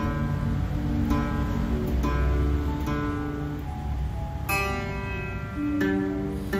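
Nylon-string classical guitar, single strings plucked one at a time, about six notes each left to ring, while a string is tuned by ear. A higher note comes in near the end.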